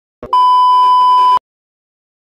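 A steady high-pitched test-tone beep, the tone that goes with TV colour bars, held for about a second and cutting off sharply.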